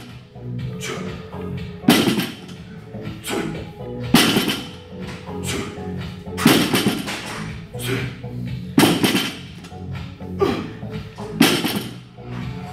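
Background music with five loud, sharp sounds about every two and a half seconds, one with each repetition as a heavy plate-loaded barbell is rowed.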